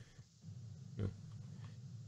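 Low room tone in a pause of talk, with one short spoken "yeah" about a second in.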